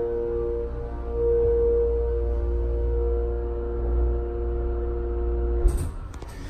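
Schindler MT elevator's drive motor running with a loud, steady hum and several steady tones while the car travels up. It cuts off shortly before the end with a few knocks as the car stops.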